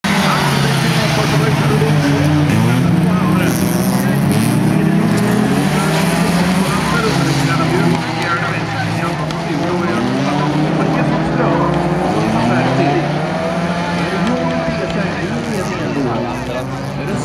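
A pack of folkrace cars racing, several engines revving at once with their pitches rising and falling against each other as they go through a bend. A little quieter after about eight seconds, with the cars farther away.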